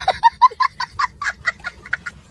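A young boy laughing hysterically in a rapid run of short, high-pitched bursts, about five or six a second.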